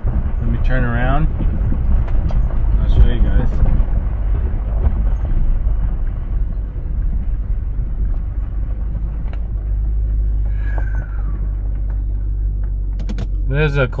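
2004 Range Rover HSE driving slowly on a dirt track: a steady low rumble of engine and tyres, with a few small knocks along the way.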